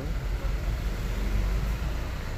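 Steady low rumble with an even background hiss, no distinct knocks or clicks.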